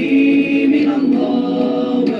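Islamic devotional nasheed sung a cappella by a group of voices, holding long drawn-out notes with no instruments.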